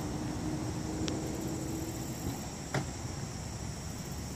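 A car door being opened on a 2016 Chevy Malibu: one sharp latch click about three-quarters of the way through. Behind it, a steady high insect drone and a low steady hum that stops a little past halfway.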